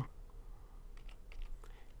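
Computer keyboard being typed on: a few faint keystrokes in quick succession, starting about a second in.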